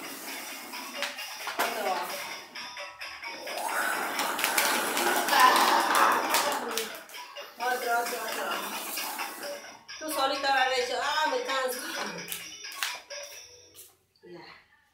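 A toddler's ride-on lion toy playing music with a recorded singing voice, with a louder noisy stretch a few seconds in.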